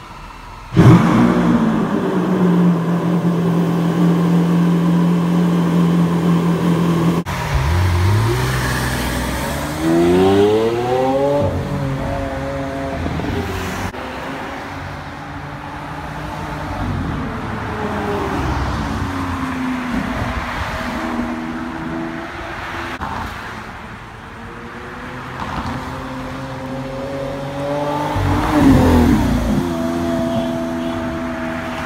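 Lamborghini Aventador Roadster's V12 starting with a loud flare about a second in, then idling steadily. After a cut the engine revs up in rising sweeps, and near the end the car drives past on the street, loudest as it accelerates by.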